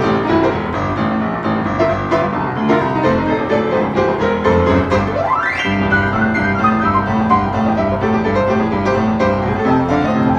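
Freshly tuned Hallet, Davis & Co UP121S studio upright piano played in boogie-woogie style, with a rolling bass figure under right-hand runs. About halfway through there is a quick rising glissando up the keyboard.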